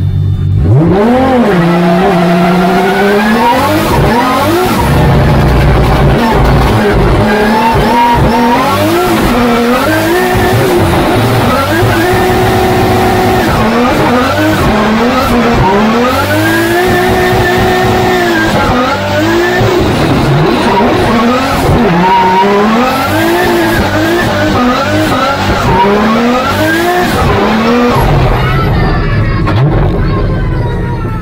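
Toyota GR86 D1GP drift car heard from inside the cockpit, its engine revving hard, the pitch climbing, holding and dropping again and again through the drift run. Tyres squeal and skid under it.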